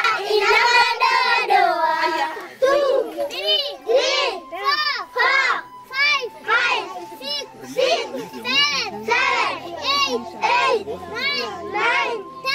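Young children's voices in unison: the end of a sung phrase for the first two seconds, then a sing-song chant of numbers counted aloud, about one word every half second to second.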